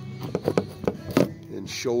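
Handling noise from a phone being set down: a string of short clicks and knocks, the sharpest a little past a second in.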